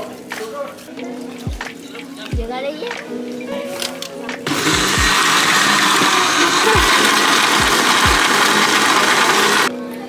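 Electric countertop blender running for about five seconds, starting about halfway through and cutting off suddenly just before the end, blending fresh pineapple into juice. Background music with a steady beat plays underneath.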